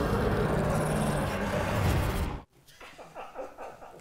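Horror film trailer soundtrack: a loud, dense rumbling mix with a low drone, cutting off abruptly about two and a half seconds in. Faint voices follow.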